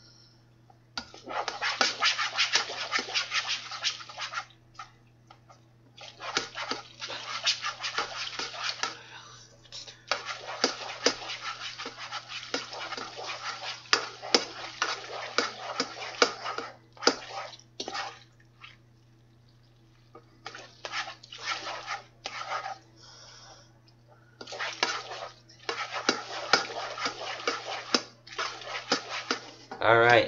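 A slotted spoon stirring and scraping cooked macaroni and melting butter around a saucepan, in long spells of rapid scraping and clicking with a few short pauses. A steady low hum runs underneath.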